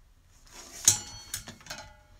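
A hot glue gun being set down on the table on its wire stand. It gives a sharp knock a little under a second in with a brief metallic ring, followed by two lighter clicks.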